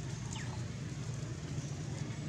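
Steady low outdoor rumble of background noise, with a faint short squeak falling in pitch about half a second in.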